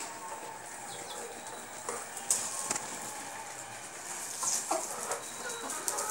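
Chickens, hens with chicks, giving scattered short clucks and peeps over a faint steady background hiss.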